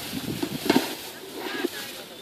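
Indistinct voices of people talking, in short broken snatches.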